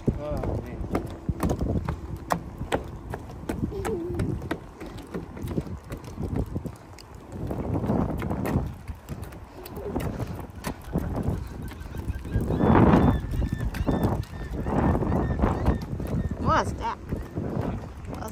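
Footsteps knocking on the planks of a wooden boardwalk, with wind rumbling on the microphone. Near the end, birds call a few times.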